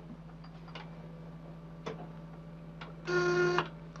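A few faint clicks over a low steady hum, then a single half-second buzz from a ship's internal telephone near the end, calling through to the captain.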